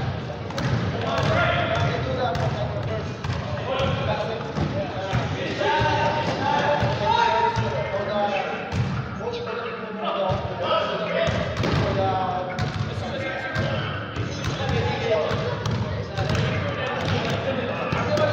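Basketballs bouncing and thudding on a gym floor, with players' indistinct voices, in a large reverberant gym hall.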